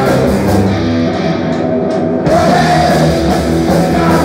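Live rock band playing loud, with electric guitars, bass and drum kit. The cymbals and deepest low end drop out for about a second and a half, leaving the guitars ringing, then the full band comes back in just past two seconds.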